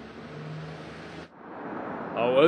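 City street traffic: an even hiss of car tyres on a wet road under a steady low engine hum. It cuts off suddenly about a second in, then traffic noise builds again.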